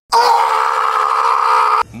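A loud scream held on one steady pitch for almost two seconds, cut off suddenly near the end: a meme sound effect edited in after a successful bottle flip.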